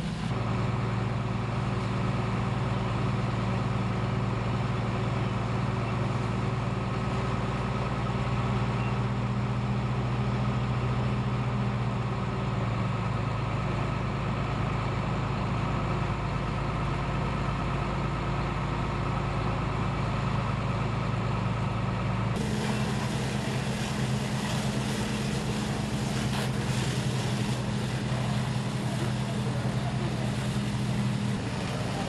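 Fire engine running steadily, a low engine drone with a layer of noise over it. About three-quarters of the way in the sound cuts abruptly to a brighter, slightly higher drone.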